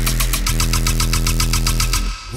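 Dubstep riddim track: a held, heavy synth bass note with a fast pulse of about eight hits a second running over it. It drops out abruptly at the very end.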